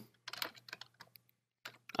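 Typing on a computer keyboard: scattered keystrokes in two short runs, one early and one near the end.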